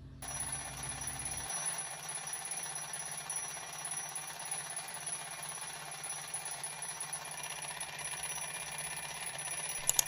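Twin-bell alarm clock ringing continuously, starting suddenly just after the start.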